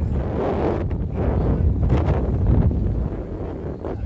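Wind buffeting a phone's microphone: a loud low rumble that swells and fades in gusts.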